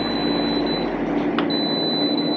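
Handheld moisture meter held against a fibreglass hull, beeping: two long, steady high beeps, the second starting about a second and a half in, over a steady low hum. The reading is taken as pretty wet.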